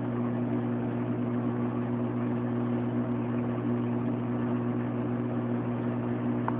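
Aquarium pump running with a steady low electric hum and a faint hiss behind it.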